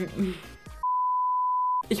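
A steady, single-pitched beep tone lasting about a second, starting a little before the middle. All other sound is cut out while it plays, as with a censor bleep edited over the audio.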